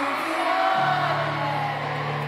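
Piano played live in an arena, with a low chord struck about three-quarters of a second in and held, over a crowd cheering.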